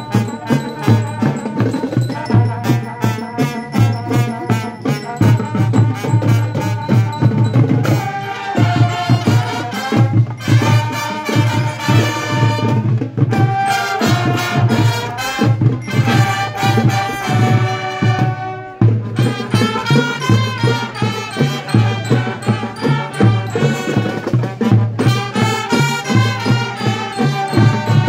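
Marching band playing live: bass and snare drums beat a steady cadence, and about eight seconds in, brass and mallet bells join with a melody over the drums.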